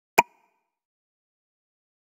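A single short pop sound effect: a sharp click with a brief ringing tone, about a fifth of a second in.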